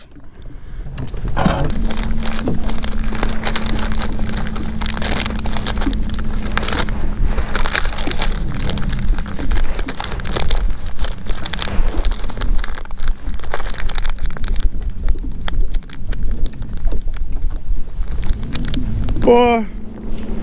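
Handling noise of soft-plastic bait packs being rummaged through in a tackle bag: irregular crinkling, rustling and clicking over a low rumble. A steady low hum runs through the first several seconds.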